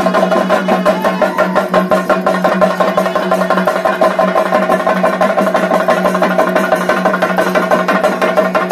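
Fast, continuous chenda drumming, the accompaniment of a Theyyam Vellattu, with a steady held note underneath.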